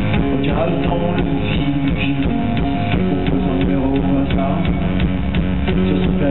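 Live cold wave band playing amplified in a club: electric guitar over a steady drum beat.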